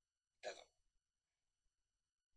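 One short spoken syllable about half a second in, otherwise near silence.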